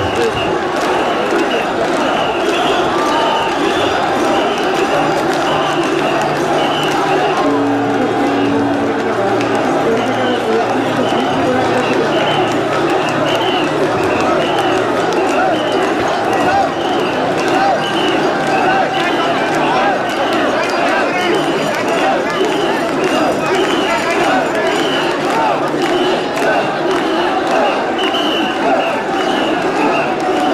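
A large crowd of mikoshi bearers shouting together in a loud, unbroken din, with a rhythmic chant pulsing through it a little more than once a second.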